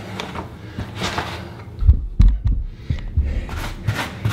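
A rubber grout float pressing and scraping grout into floor-tile joints, with a few dull, deep thumps about two seconds in as the grout is pounded into the joints.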